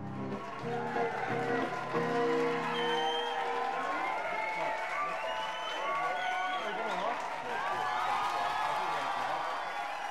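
The song's instrumental accompaniment holds its final chords for the first few seconds and then stops, giving way to a pub crowd's mixed voices and clapping.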